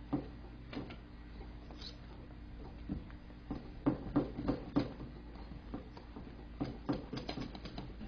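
Cake batter being stirred slowly in a mixing bowl: irregular soft clicks and scrapes of the mixing utensil against the bowl, coming in quick runs around the middle and again near the end.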